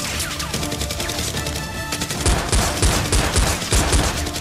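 Rapid gunfire sound effects, many shots a second, laid over background music, with heavier low strikes in the second half.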